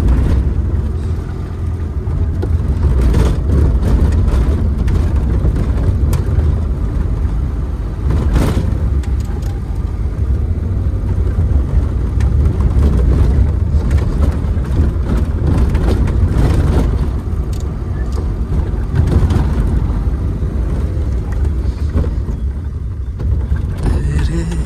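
Maruti 800's small three-cylinder petrol engine and road noise heard from inside the cabin while driving, a deep steady rumble with a few brief knocks as the car goes over the rough road.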